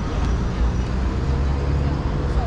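City street traffic: a steady low rumble of car engines and tyres on the road, with a faint held engine tone from about half a second in.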